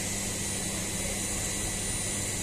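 Steady industrial rushing noise of fly ash pouring from a hopper outlet onto a heap, over constant machinery hum with a few steady tones. The ash is being dumped by hand because the dome valve is malfunctioning.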